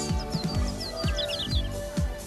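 A small bird chirping in a quick run of short, high twitters that stops shortly before the end, over background music with a steady beat.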